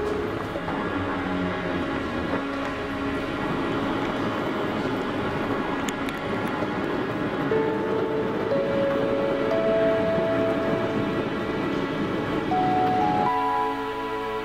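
Soft background music of slow, held melody notes over a steady low mechanical noise. The noise falls away near the end, leaving the music on its own.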